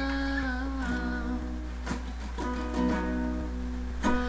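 A woman humming a wordless melody over acoustic guitar picked in single notes, with a steady low hum underneath.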